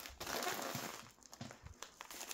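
Faint crinkling and rustling of a padded mailing envelope being handled as hands reach into it, mostly in the first second and quieter after.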